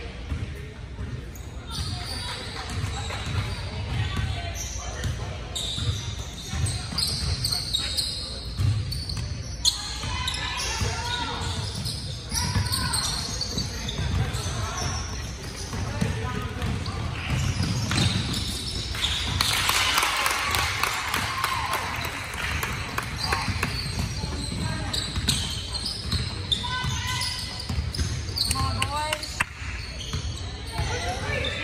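Basketball bouncing on a hardwood gym floor during a game, under shouting from players and spectators that echoes in the gym; the voices swell about two-thirds of the way through.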